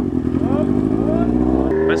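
Yamaha XJ6 motorcycle's inline-four engine running steadily at low revs as the novice rider pulls away slowly. The engine sound drops away suddenly near the end.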